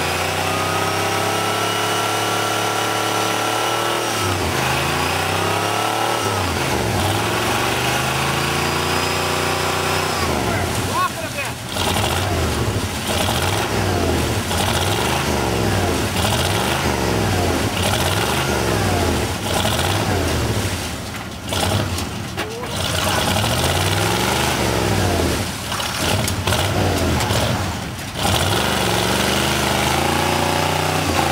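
Diesel engine of a Ford pickup with an exhaust stack, revved hard under load as the truck tries to drive out of a mud bog, its wheels spinning in the mud. The engine note holds, climbs, then rises and falls over and over, about once a second, in the second half.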